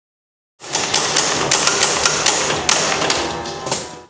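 A dense clatter of sharp, irregular clicks and knocks. It starts abruptly about half a second in and fades away near the end.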